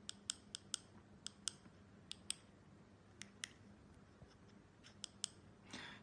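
Small push-buttons on an e-bike display's handlebar button pad clicking as the battery voltage setting is stepped through: about a dozen short, sharp clicks, often in quick pairs, spread over several seconds.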